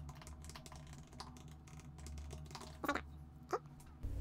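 Typing on a computer keyboard: a run of quick, faint keystrokes, with two louder clicks late on.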